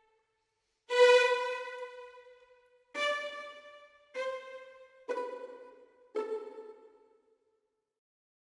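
Sampled orchestral first-violin section (Spitfire Symphonic Strings) playing five single notes, each with a different articulation triggered by key switch. The first note is held about two seconds, then a higher note and three notes stepping down follow at about one-second intervals, each fading out, and the sound stops a little before the end.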